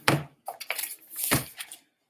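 Sheets of paper rustling and flapping as they are leafed through, a few short crackles that stop shortly before the end.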